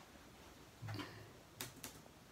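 Quiet room with a few faint, sharp clicks: one about a second in, after a brief low sound, and two more close together near the end.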